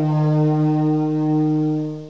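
Solo saxophone holding one long, low note at the end of a falling phrase; the note fades out near the end.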